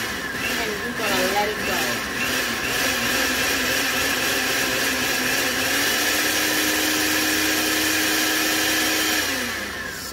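Countertop blender running steadily, grinding granulated sugar into powdered sugar; the motor runs down in the last second.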